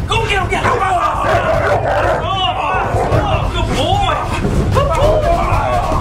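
Several voices shouting and calling over one another, with a continuous low rumble underneath.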